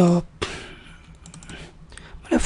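Computer keyboard keys tapped in a quick run of clicks, thickest about a second in, after a brief voiced sound at the very start.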